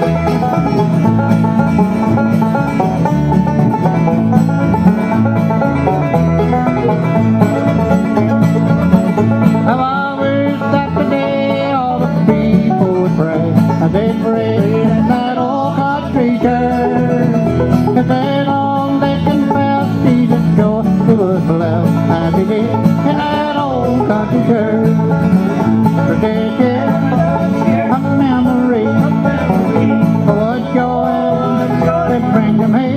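Live acoustic bluegrass band playing through a PA, with banjo prominent over strummed acoustic guitars and mandolin, and steady picking throughout.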